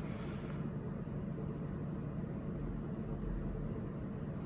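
Steady low background hum, even throughout, with no distinct sounds on top of it.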